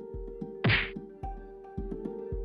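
Game-show countdown music: a held tone over low beats about twice a second. A short, loud sound-effect hit lands under a second in and is the loudest thing heard.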